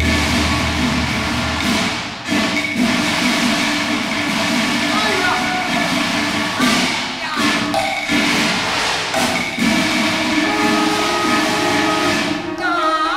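Cantonese opera ensemble accompaniment with percussion strikes cutting through a dense, sustained mix, over indistinct voices with no clear words.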